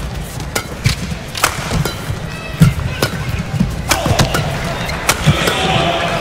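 Badminton rally: sharp cracks of rackets hitting the shuttlecock at irregular intervals, with shoe squeaks on the court. Arena crowd noise grows louder from about four seconds in.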